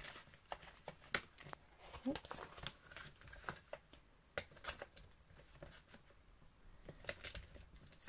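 Faint, scattered crinkles and light taps of a laminated paper journal cover being flipped over and pressed flat on a scoring board.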